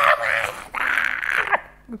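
A person's raspy, hissing vocal noise in two bursts, the second ending about one and a half seconds in.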